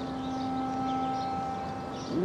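Soft background music score: a few sustained notes held steady as a chord.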